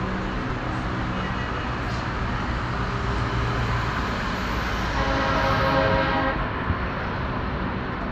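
Busy road traffic noise from cars, minibuses and motorbikes passing below, with a vehicle horn held for about a second just past the middle.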